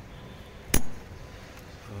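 A single sharp metallic click about three quarters of a second in, as a small retaining clip is snapped onto the spring-loaded linkage of a truck's turbo butterfly valve.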